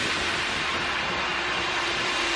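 Electronic background music in a quiet build-up passage: a steady hissing noise wash under one long held note.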